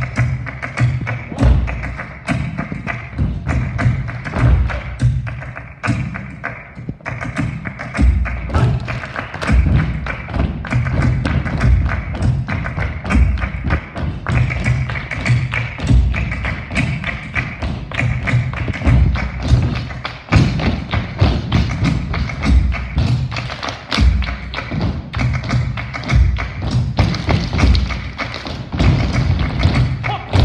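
Flamenco-style dance music played loud, with many quick strikes of dancers' heeled shoes stamping on the wooden stage and handclaps over it; the low thumps are the loudest part.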